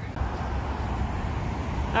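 Road traffic on the street alongside: a steady rush of passing vehicles' tyre and engine noise, swelling just after the start and holding.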